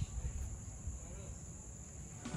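Faint, steady, high-pitched chirring of crickets over a low background rumble.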